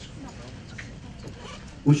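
Low background noise of a seated audience in a large hall, with faint rustles and murmurs. Near the end a man starts speaking through a handheld microphone over the hall's loudspeakers.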